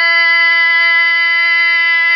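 A woman's voice holding one long, steady sung note without wavering, within an Iu Mien páo dung traditional song.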